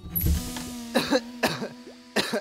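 A cartoon fox character coughing three times in quick succession from the smoke of his just-exploded invention. A low rumble comes at the start, and a held music note sounds underneath.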